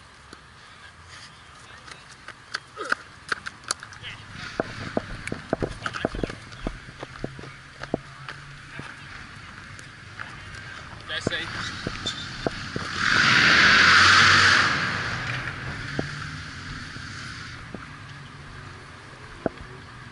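A body-worn action camera's microphone picks up rustling and a run of short knocks and clicks as it moves against clothing. About thirteen seconds in, a loud rush of noise lasts about two seconds.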